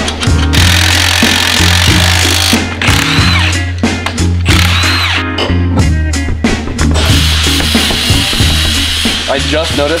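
Background music with a steady bass beat, over a handheld power tool running in two bursts of a few seconds each, from about half a second in and again from about seven seconds.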